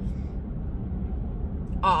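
Steady low rumble of a car's road and engine noise heard inside the cabin while driving, with a woman's voice starting a word near the end.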